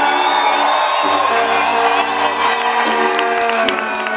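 A live band playing sustained held notes over a bass line, with the crowd cheering and whooping.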